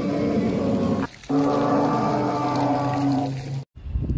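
A recorded dinosaur call played from an animatronic dinosaur's loudspeaker: two long, low, droning bellows with a brief break about a second in. The sound cuts off abruptly near the end.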